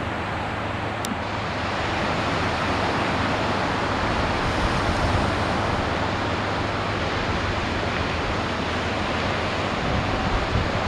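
Ocean surf breaking and washing in a steady roar of noise, with wind, swelling slightly about halfway through.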